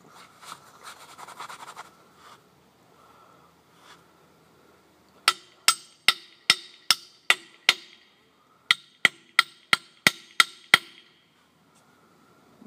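Hammer blows on a sign post, driving it into the ground: two quick runs of about seven sharp strikes each, split by a short pause, with the second run a little faster.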